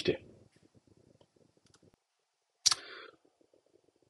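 A single sharp click about two and a half seconds in, followed by a brief soft rustle, against an otherwise quiet small room with faint scattered ticks.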